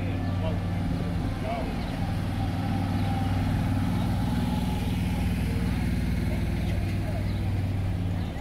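ATV engine running steadily at low speed as the four-wheeler, towing a small trailer, passes close by; its hum weakens near the end as it moves off.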